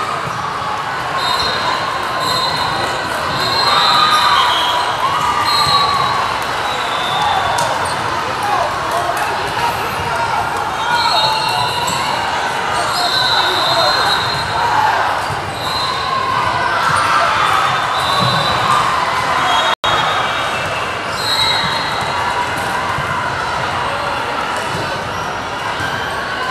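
Gym ambience in a large echoing hall: many people talking at once, with balls bouncing on the hardwood floor and short high squeaks coming and going.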